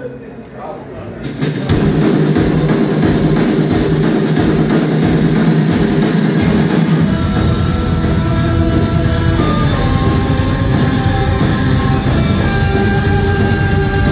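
Live rock band starting a song loudly about a second in, with electric guitars and drum kit. The bass and kick drum fill out heavily from about halfway, and long held melodic notes come in over the top later on.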